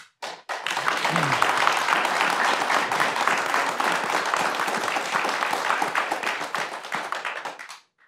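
Studio audience applauding: many hands clapping steadily, starting about half a second in and fading out just before the end.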